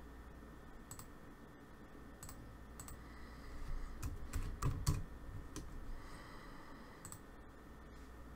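Computer keyboard typing with scattered sharp clicks. There is a short, denser run of keystrokes about four to five seconds in, which is the loudest part.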